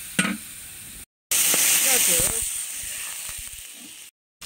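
Sliced pork belly sizzling in a hot wok as its fat renders out. The sizzle breaks off for a moment about a second in, then comes back louder and slowly fades.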